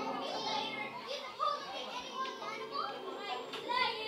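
Children's voices in a hall, with the music before them fading out about a second in.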